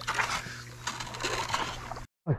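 Steady low electrical buzz from overhead high-voltage power lines, fading about two-thirds of the way through, with faint irregular splashes and knocks of water and paddling around a canoe.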